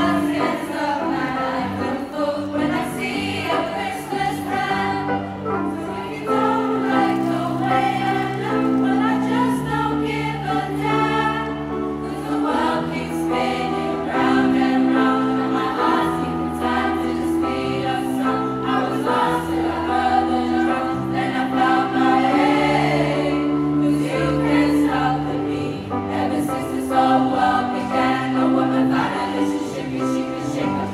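Youth choir singing an upbeat show tune in full voice, accompanied on keyboard with a steady moving bass line.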